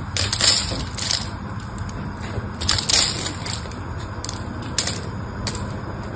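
Knife blade scraping and cutting into a dried bar of soap, with crisp crackling as flakes and shavings break away. The loudest crunches come about half a second in and again around three seconds in.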